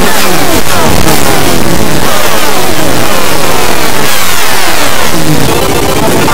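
Very loud, harshly distorted processed audio, full of overlapping falling pitch sweeps that repeat throughout.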